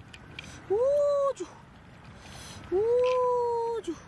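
A woman's voice giving two long, high "oooh" exclamations of amazement, each rising, held and then falling away, the second one longer.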